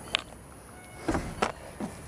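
Footsteps and light knocks on the fiberglass floor of a boat hull: four short, separate thuds and clicks, a single one just after the start and three more in the second half.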